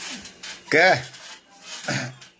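A man's voice speaking over a video call: two short syllables with a steady hiss between them.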